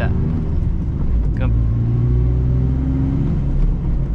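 Toyota GR Yaris's turbocharged 1.6-litre three-cylinder engine heard from inside the cabin, its revs held steady for a couple of seconds instead of dropping, then falling away near the end. This is the engine's rev hang, which the tuner calls very bad on this car and not normal.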